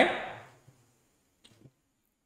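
A man's spoken word trails off at the start, then near silence broken only by a few faint clicks, like keys or a mouse, about a second and a half in.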